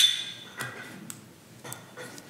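A sharp clink with a short ringing tail right at the start, then a few lighter knocks and clicks: hard objects handled and set down on a desk by a table microphone.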